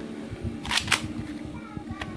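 Two sharp mechanical clicks in quick succession from a spring airsoft pistol being handled in both hands.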